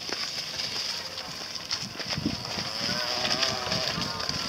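A person's voice, drawn out and held briefly near the end, over a steady high hiss and low rustling.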